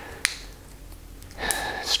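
A man drawing a breath in a pause between sentences, with a single short click about a quarter of a second in.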